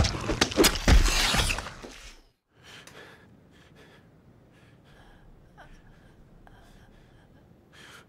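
A burst of several sharp crashing hits over the first two seconds, ending abruptly. After that come faint short sounds recurring about every half second.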